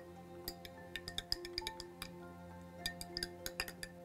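Metal teaspoon clinking against a drinking glass as it stirs hot milk with turmeric, in quick light clusters of clinks, over quiet background music.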